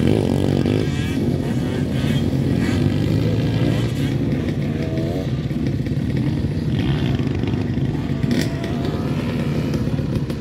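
Several dirt bike engines running on a motocross track, their revs rising and falling as they ride; one climbs sharply about the start.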